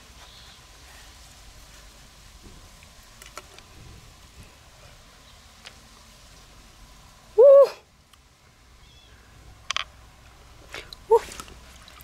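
A woman's short, loud hooting 'ooh' about halfway through, its pitch rising then falling, with a softer, shorter one near the end. Between them there are a few small clicks and faint handling sounds as she cuts and pulls apart the mussel's flesh.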